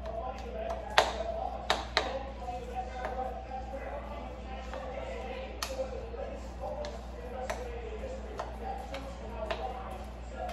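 Metal spoon stirring a ground beef mixture in a plastic mixing bowl, with irregular clicks of the spoon against the bowl, the sharpest about a second in.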